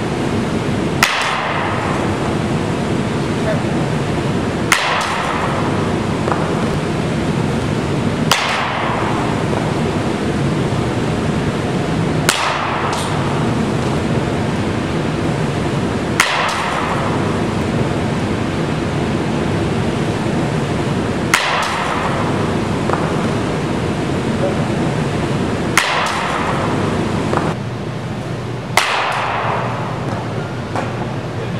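A softball bat hitting pitched softballs in an indoor batting cage, eight sharp cracks about four seconds apart, over steady background noise.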